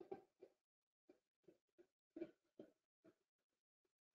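Near silence, broken by a few faint, brief sounds.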